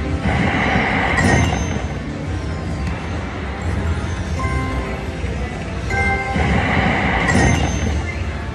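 Red Festival (Bao Zhu Zhao Fu) slot machine playing its spin sounds twice, about six seconds apart. Each spin is a burst of bright game music and chimes, ending in a short high ping as the reels stop, over a steady run of casino machine music.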